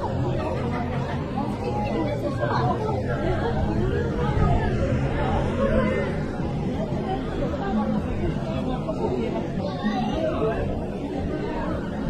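Chatter of passers-by in a dense pedestrian crowd, several voices talking over one another.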